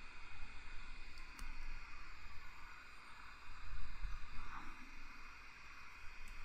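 Room tone: a steady hiss and low rumble, with a faint click about a second and a half in.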